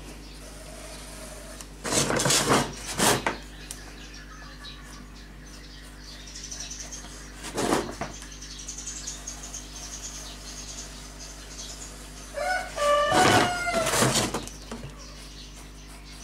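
A rooster crowing once near the end, a single drawn-out call of about two seconds. Earlier come a few short scuffing noises, the first group about two seconds in and one more near the middle, over a steady low hum.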